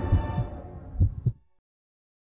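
Closing ident music of a TV news channel: a deep booming low rumble with a few low thuds, ending abruptly about one and a half seconds in.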